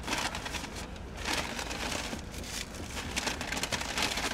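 Paper takeout bag rustling and crinkling in someone's hands as it is opened and the food inside is handled, in irregular scratchy bursts.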